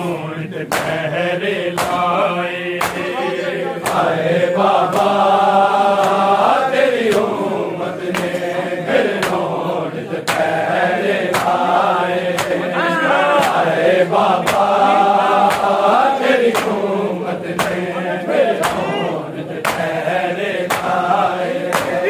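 A noha chanted by men's voices, with a crowd of men beating their chests in unison (matam): a sharp slap of palms on bare chests a little more than once a second, keeping time with the chant.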